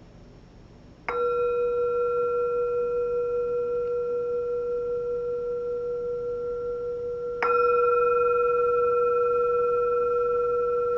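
A meditation bowl bell struck twice, about six seconds apart, each strike ringing on in a long steady tone with a slow wavering; the second strike is louder. It sounds the close of the meditation sit.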